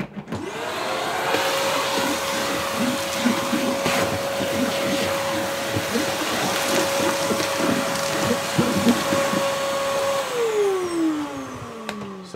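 Bagless cylinder vacuum cleaner switched on, its motor whine rising to a steady pitch within about a second as it sucks up dust from a workbench. About ten seconds in it is switched off and the whine falls away as the motor spins down.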